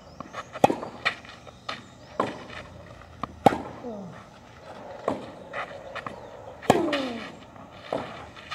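Tennis rally: sharp pops of racket strings striking the ball, about every second or so. The near player's forehand and backhand strokes are the loudest, with quieter bounces and the far player's hits in between.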